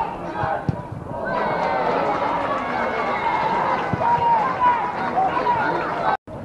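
Pitchside voices at a small football ground: many people shouting and calling over one another in a continuous babble, quieter for the first second, with two dull thuds about a second in and about four seconds in.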